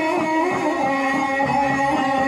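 Javanese gamelan ensemble playing: a steady run of struck notes under a held, wavering melody line.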